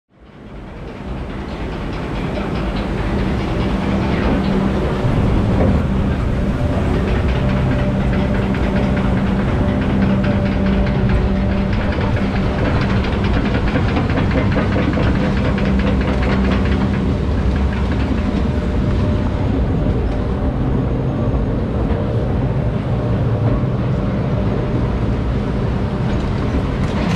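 Log flume ride heard from inside a boat: a steady mix of running water and machinery hum with rattling, fading in over the first couple of seconds.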